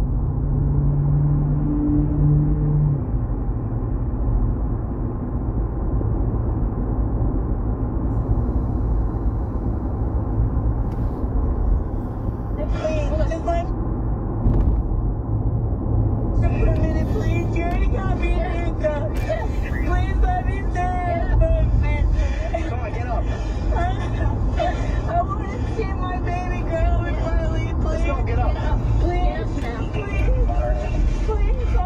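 Steady low road and engine rumble inside a moving car's cabin. A low steady tone sounds for the first few seconds. A person's voice, talking or singing, comes in briefly a little before the middle, then runs over the rumble from just past the middle on.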